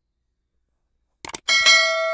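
A quick click about a second and a quarter in, then a bright bell ding with several steady ringing tones that carries on to the end: the notification-bell sound effect of a subscribe-button animation.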